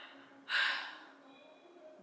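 A woman's single quick, sharp breath, a gasp or sigh, about half a second in, fading within a few tenths of a second.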